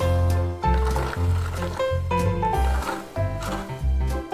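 Cheerful children's background music with a steady bass line and a simple held-note melody.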